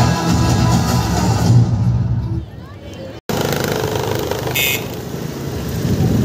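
Music fades out over the first two seconds or so. After an abrupt cut it gives way to street traffic noise, with passing motorbikes and cars.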